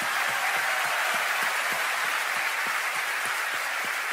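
Concert audience applauding steadily, an even wash of many hands clapping, greeting a musician who has just been introduced by name.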